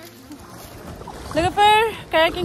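Faint steady background hiss, then about a second and a half in a high voice starts, loud and held on fairly level pitches.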